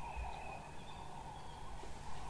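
Quiet outdoor ambience with a low steady background hiss and faint, thin high-pitched calls, one early and one near the end.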